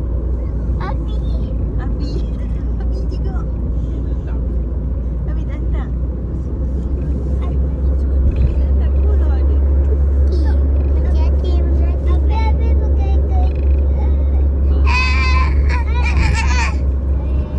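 Steady low rumble of a car driving, heard from inside the cabin. Children's voices come and go faintly over it, and a child's high-pitched voice rings out near the end.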